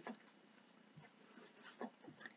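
Near silence: room tone, with one faint, brief soft sound near the end.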